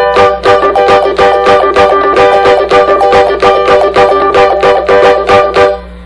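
Electric banjolim (small Brazilian banjo) strummed rapidly on one chord, about five strokes a second, stopping shortly before the end, with its pickup switched off so the strings are heard acoustically. A steady mains hum from the connected amplifier runs underneath.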